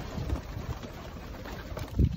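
Racing pigeons in a loft, faint cooing under a low, uneven rumble of wind on the microphone.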